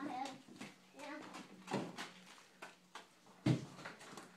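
Light scattered knocks, then a louder thump about three and a half seconds in as garbage is dropped into a plastic barrel.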